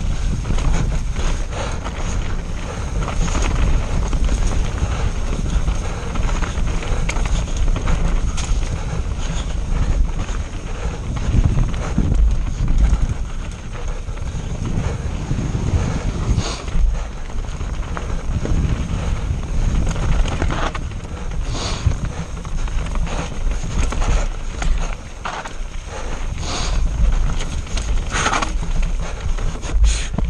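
Wind buffeting the microphone of a bike-mounted or rider-worn action camera during a fast mountain-bike descent, with a heavy rumble from the tyres rolling over dirt and rock. Frequent sharp knocks and rattles come from the bike as it hits bumps.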